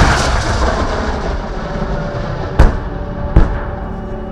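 Artillery explosions: one very loud blast with a long rolling rumble that slowly dies away, then two more sharp bangs about two and a half and three and a half seconds in.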